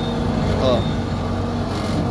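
Volvo MC-series skid steer loader's diesel engine running at a steady idle, a constant even hum with no revving.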